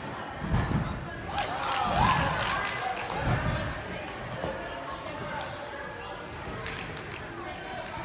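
Dull low thuds of a gymnast landing and rebounding on a padded tumbling mat after a flip, three of them in the first few seconds, with voices carrying in a large hall.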